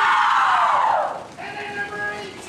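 A team of young female hockey players shouting together in a loud group cheer that lasts about a second, then breaks off into a few speaking voices.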